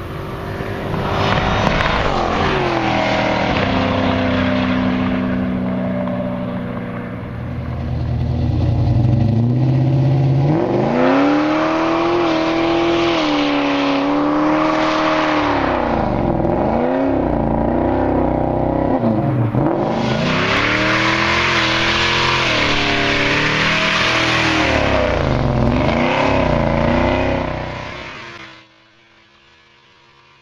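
V8 muscle cars approaching and accelerating past at full throttle. From about ten seconds in, a V8 revs up and down repeatedly during a burnout, with the hiss and squeal of spinning tyres. The sound cuts off sharply near the end.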